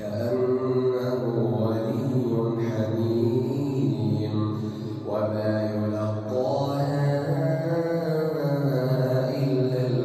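A man's voice reciting the Quran aloud in slow, melodic tajweed chant through the mosque's microphone, with long held notes that rise and fall in pitch. A new phrase begins at the very start.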